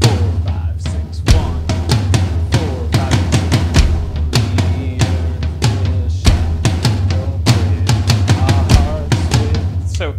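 Electronic drum kit played in a steady groove, right hand on the floor tom and left hand on the rack tom with the kick underneath, with a short fill walking down the toms. The floor tom pad is making weird triggering noises.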